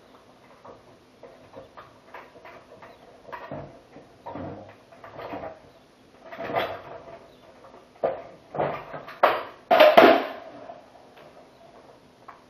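Irregular metal clanks and knocks from handling a floor jack and its door-lift stand as a Jeep Wrangler JK door is lifted off its hinges. The loudest cluster of knocks comes late.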